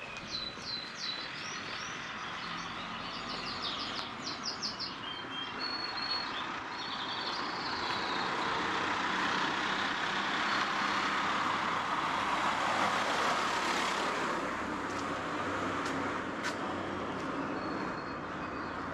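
Small birds chirping in the first few seconds, then a car approaching and passing by on the street, loudest about two-thirds of the way in and fading after.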